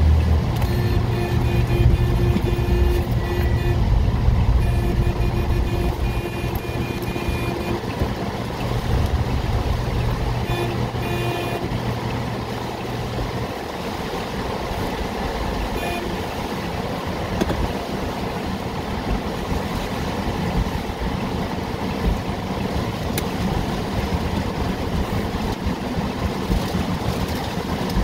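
Heavy rain pelting a car, heard from inside the cabin with the windshield wipers running. A steady low hum underneath cuts off about halfway through.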